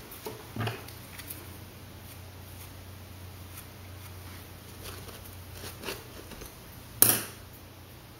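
Small clicks and taps from a makeup palette and brush being handled, with one sharper click about seven seconds in, over a low steady hum.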